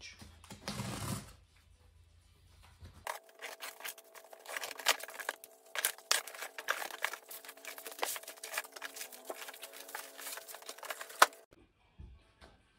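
A taped cardboard box being cut open and unpacked. A short scrape of a blade slitting the packing tape comes first. After a pause, there is a long run of crackling and rustling from cardboard flaps and plastic-bagged parts, with one sharp knock near the end.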